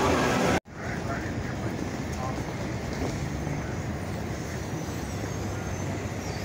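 Busy casino-floor crowd din that cuts off abruptly about half a second in, followed by steady street traffic noise from passing cars.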